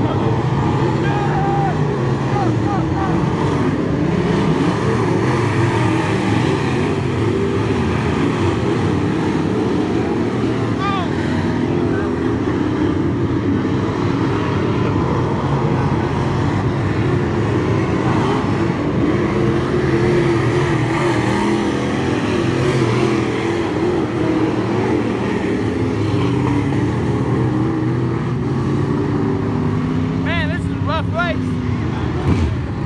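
Several dirt-track late model race cars with steel-block V8 engines running around the oval together, a steady layered engine drone that holds at one level.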